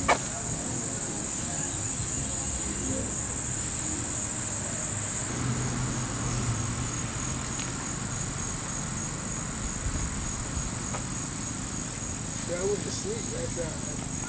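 Insects chirring in a steady high-pitched drone, with one sharp click right at the start.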